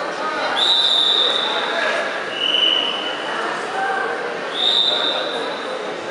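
Three long referee's whistle blasts, each about a second long: two at the same high pitch, with a slightly lower one between them, over a steady babble of crowd voices.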